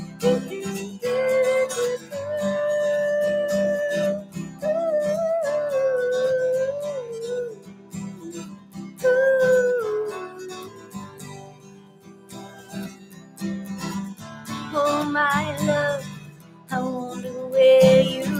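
A woman singing long, held, sliding 'doo' notes without words over a strummed acoustic guitar, in a slow country-folk ballad. The playing thins out for a moment about two-thirds of the way through, then the strumming picks up again.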